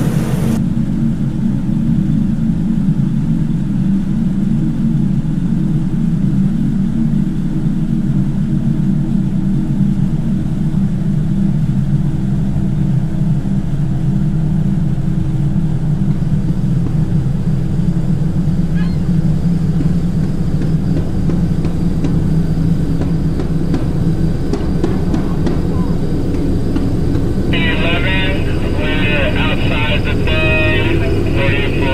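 Pontoon boat's outboard motor running steadily under way, a loud even low drone.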